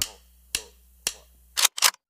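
Sharp percussive clicks in a silent gap between two music tracks: one as the first track cuts off, single clicks about half a second and a second in, and a quick double near the end.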